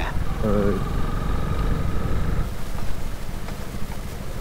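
Honda CRF250L single-cylinder four-stroke engine running at low revs as the motorcycle slows down on a dirt road, easing off about two and a half seconds in.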